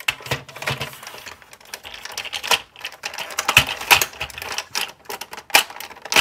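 Plastic and die-cast parts of a transforming robot figure being handled and pushed together: a run of irregular small clicks and knocks as tabs are worked into their slots, the strongest knock about four seconds in.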